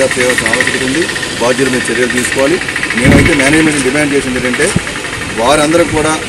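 A man talking in the open air, over the steady hum of a running engine. About three seconds in there is a short low thump, the loudest moment.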